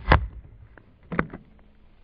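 Crossbow bolt striking a balloon of oobleck (cornstarch and water non-Newtonian fluid) and passing easily through it into the foam archery target behind, a single sharp impact just after the start. A second shorter, sharp knock follows about a second later.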